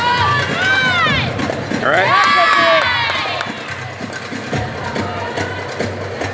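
Gymnastics floor-exercise music playing over a crowd in a large hall, with long rising-and-falling cheers about a second in and again from two to three seconds in.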